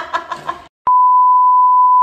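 A burst of laughter breaks off less than a second in. After a short silence, the steady high-pitched test-pattern beep that goes with TV colour bars starts with a click and holds at one unchanging pitch.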